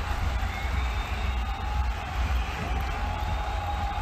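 Steady cricket-stadium ambience on a TV broadcast: an even wash of faint crowd noise over a low rumble, with no distinct events.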